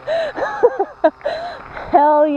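A woman laughing, a string of short excited laughs.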